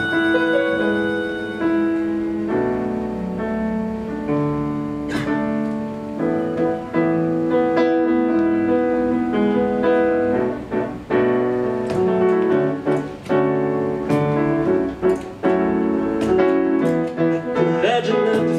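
Live band playing an instrumental passage built on sustained electric keyboard chords that change every second or two, with guitars underneath and a few sharp percussion hits, more of them near the end.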